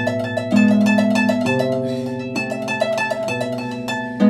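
Concert grand pedal harp playing a fast trill on one note while the lower chords change beneath it about once a second. This is the harp's way of imitating a note held by a wind instrument over a moving chord progression.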